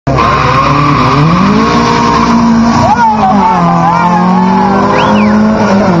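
Car engine at full throttle in a drag race, pitch climbing hard and dropping at a gear change about three seconds in, then climbing again to another shift near the end. People are shouting over it.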